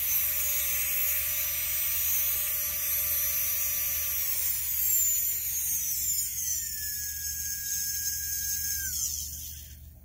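Mastercarver Micro-Pro micromotor carving handpiece running with a pretty quiet high whine. Its pitch slides down twice, about four seconds in and again near the end, as the speed dial is turned down, and it winds down to a crawl in the last second.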